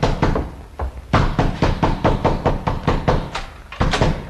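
Rapid, insistent knocking on a door, about six or seven knocks a second, in two runs: the first stops about half a second in, and the second starts about a second in and goes on almost to the end.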